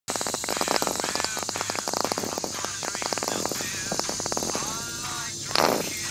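White sauce squirting from a plastic squeeze bottle, crackling and spluttering as air mixes with the sauce at the nozzle, with a few short squeaky squelches and a louder splutter near the end.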